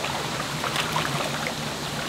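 Shallow rocky stream running, with small splashes of hands moving through the water.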